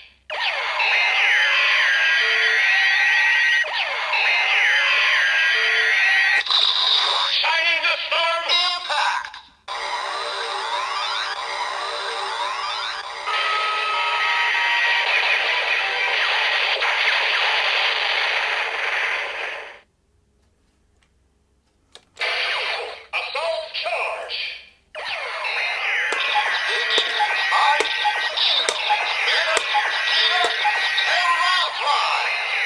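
Electronic sound effects and music from a DX Kamen Rider Zero-One driver toy with the Assault Grip, played through its small speaker. A looping standby tune repeats about every two seconds, then changes into denser electronic music and effects. Past the middle it cuts out for about two seconds before the effects start again.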